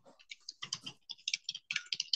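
Computer keyboard typing: a quick, uneven run of keystrokes as a line of text is typed.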